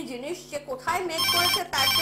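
A telephone ringing: two short electronic rings, the first a little over a second in and the second running to the end, heard over a woman talking.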